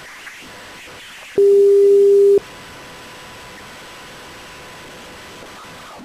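Telephone line hiss with a single ringback tone, one steady low beep lasting about a second, as the call rings at the other end before it is answered.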